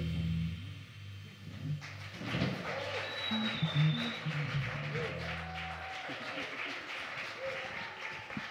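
A jazz quintet's closing low note rings out and fades over several seconds while the audience claps and cheers lightly, with a few voices in the room.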